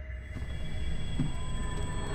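Horror-trailer sound design: a low rumble under several thin, steady high-pitched tones, swelling slowly in loudness.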